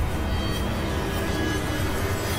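Horror film score: a steady, deep rumbling drone with faint held tones above it.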